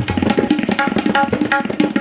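Tabla playing a fast Ajrada kayda in chatasra jati: a dense run of quick, ringing strokes on the dayan over deep strokes on the metal bayan. The bayan is strong because the phone sits right beside it.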